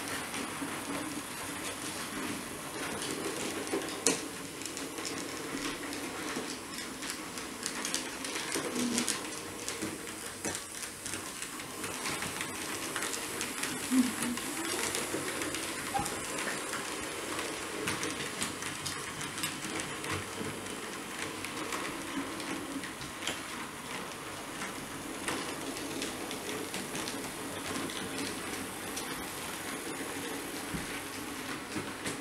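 Roco H0-scale model diesel locomotive running on the layout's track: a steady faint motor hum with irregular small clicks of the wheels over rail joints and points.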